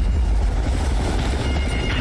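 Animated military transport helicopter sound effect: a steady low rotor rumble as the helicopter comes in.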